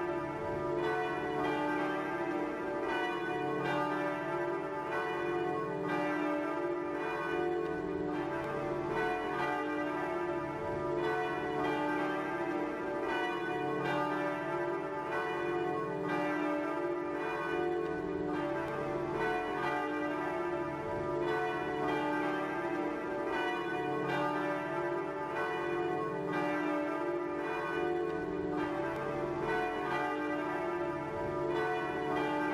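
Church bells ringing: a steady run of overlapping strikes over a lingering hum.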